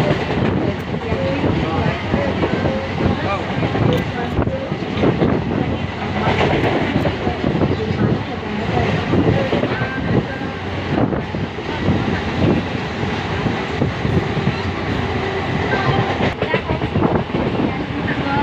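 A passenger train running at speed, heard from inside the carriage through an open window: a steady rumble with the wheels clattering over the rail joints.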